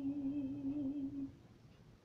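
A woman's voice holding one long sung note with a slight waver, ending a little over a second in.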